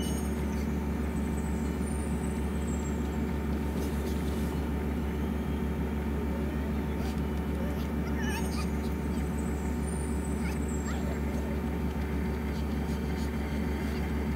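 Steady low hum throughout, with faint high-pitched chirping glides about two seconds in and again around eight to ten seconds in.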